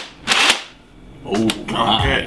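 Handling noise from a plastic Nerf Centurion blaster: a short burst of noise shortly after the start, then a single sharp click about a second and a half in, with a man's voice briefly near the end.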